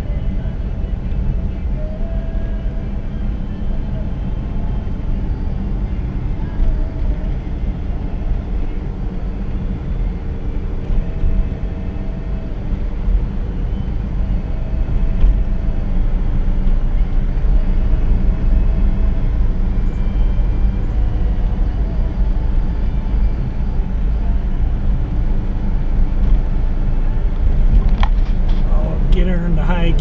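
1959 Chevrolet Bel Air's engine running at low road speed, with tyre and road rumble, heard from inside the cabin; a steady low rumble that grows slightly louder in the second half.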